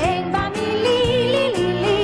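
A 1970s Israeli pop song recording: a high melody, sung or voice-like and without clear words, glides up, then holds notes with vibrato over a full band accompaniment.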